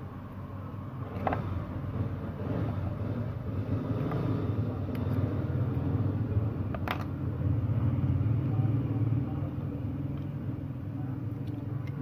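Steady low rumble like a road vehicle going by, swelling in the middle, with one sharp snip about seven seconds in as a hand cutter cuts a thin jumper wire.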